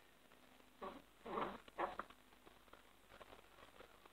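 Faint, brief scraping and clicking of hands handling the clutch side of a Stihl MS660 chainsaw, a few small sounds close together between one and two seconds in.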